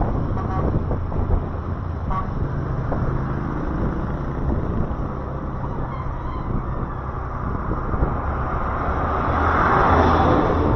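Road traffic noise heard from a moving vehicle: a steady low engine and road rumble with wind on the microphone, swelling near the end as a large truck passes close alongside.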